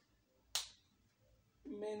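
A single short, sharp click about half a second in, dying away quickly, followed by a man starting to speak near the end.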